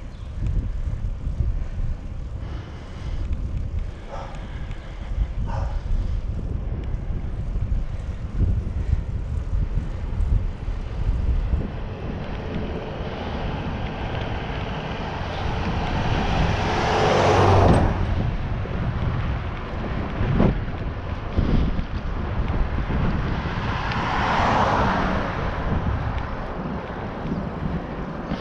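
Wind buffeting the microphone of a bicycle-mounted camera while riding, a steady low rumble. Two louder rushes rise and fall over it, the loudest about two-thirds in and another near the end.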